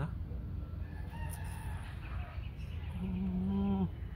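Farm animals calling in the background, ending in one long, steady pitched call near the end that stops suddenly.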